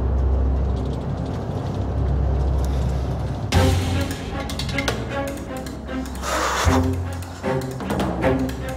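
Dramatic background music with low strings. For the first three and a half seconds a low steady drone of a car's cabin lies underneath; it cuts off suddenly with a deep drum hit as the music carries on.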